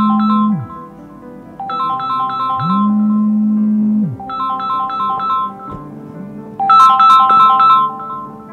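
Mobile phone ringtone: a short melody of quick high notes repeating about every two and a half seconds, four times, with a low buzz between the phrases.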